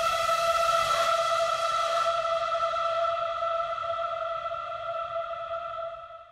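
A single held note of an electronic track, a layered vocal sample thickened with distortion, bit-crushing and a long reverb, sustained steadily and slowly fading over the last few seconds.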